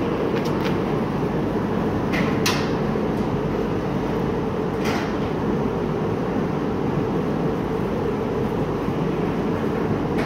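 Steady machinery rumble of screen-printing shop equipment, with a few sharp clicks and knocks in the first half.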